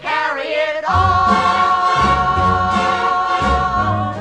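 Show-tune vocal ensemble singing in harmony: a short sung phrase, then from about a second in one long held chord.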